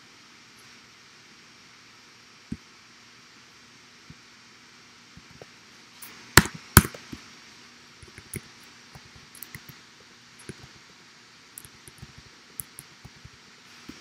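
Computer keyboard and mouse clicks over a faint steady hum: a lone click a couple of seconds in, two sharp clicks a little past the middle, then scattered lighter key taps over the next several seconds.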